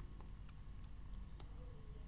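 Computer keyboard keys being tapped, about six separate light clicks, over a faint low hum.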